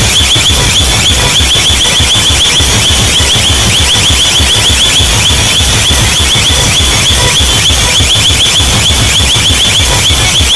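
Very loud DJ sound-system music: a rapid, repeating high siren-like chirp, about five a second, over a fast, heavy bass pulse.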